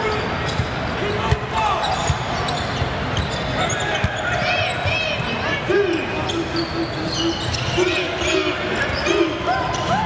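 A basketball being dribbled on a hardwood court, with short high sneaker squeaks from players cutting, over steady arena crowd noise.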